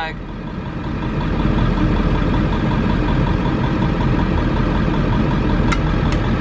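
Camper van engine idling, heard from inside the cabin: a steady rumble that swells over the first second or so and then holds level. A light click near the end.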